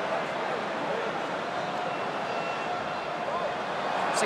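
Steady murmur of a large stadium crowd, an even wash of many voices with no single sound standing out.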